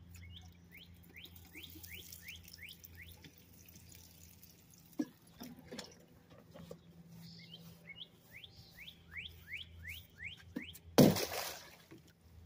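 A songbird singing two runs of quick down-slurred whistled notes, about three a second, over a low steady hum. Near the end a loud burst of noise lasts under a second.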